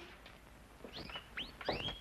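Pet birds chirping: a few short, quick upward chirps, fairly faint.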